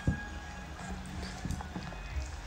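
A few light knocks of wooden chopsticks against a plastic noodle tray as noodles and kimchi are stirred, one near the start and two more about one and a half seconds in.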